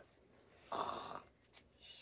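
A person imitating a snore for a sleeping puppet: one short, faint, breathy snore a little under a second in.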